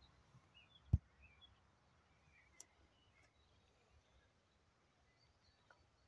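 Quiet rural field ambience with faint, scattered bird chirps, and a single low thump about a second in.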